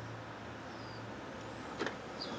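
Quiet workbench room tone: a steady low hum, a faint high chirp that falls in pitch about midway, and a single short click near the end.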